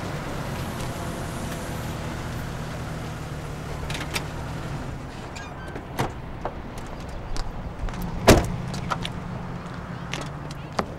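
A parked SUV's engine idling with a steady low hum, then clicks of a car door being opened and one loud car door slam about eight seconds in.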